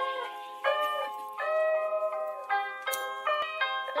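Sped-up hip-hop song's intro: a melody of held notes that step to new pitches every half second or so, with no drums or bass yet. A rapping voice comes in right at the end.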